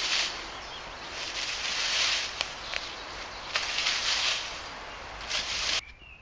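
Dry fallen leaves rustling and crunching as a child kicks and scuffs through the leaf litter, in a run of uneven bursts that stops suddenly near the end.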